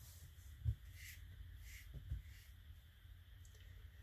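Faint swishing and tapping of a watercolour brush in the palette as a grey wash is picked up, with two soft low bumps about a second and a half apart.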